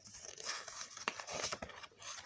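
A picture-book page being turned by hand, the paper rustling and brushing irregularly with a few small clicks.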